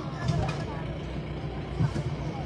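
Safari jeep engine running, a steady low hum, with faint voices over it.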